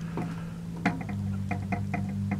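Background music with held low notes that shift pitch about a second in. Over it come a few light, scattered clicks from the plastic segments of an action figure's bendable tail being handled and posed.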